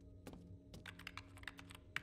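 Faint typing on a computer keyboard: a quick, irregular run of key clicks over a low steady hum, the sound effect of someone working the ancient controls of a spaceship computer.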